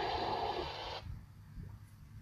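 The hissy tail of a recorded voice message being played back. The hiss cuts off suddenly about a second in, leaving only a faint low rumble.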